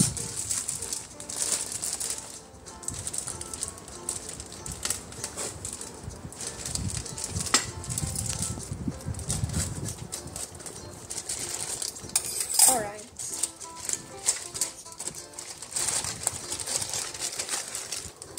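Thin clear plastic bag crinkling and rustling in the hands as the instruction sheet is worked out of it, in many small crackles, over soft background music.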